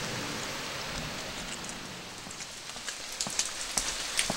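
Steady rain falling, an even hiss, with a few sharp ticks of drops landing near the end.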